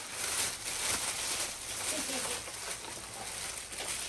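A plastic bag rustling and crinkling steadily as it is opened and rummaged through.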